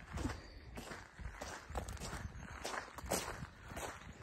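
Footsteps crunching on a wet gravel road at a steady walking pace, about two steps a second.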